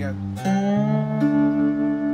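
Three-string cigar box guitar played with a slide: a chord strummed across all three strings about half a second in, gliding slightly up into pitch and then ringing on, with a higher note coming in about a second in.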